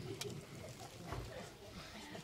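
Quiet stretch of room sound with a faint voice, a short sharp click near the start and a soft low thump about a second in.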